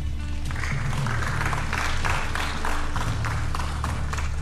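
Audience applauding, starting about half a second in and easing off near the end, over steady background music.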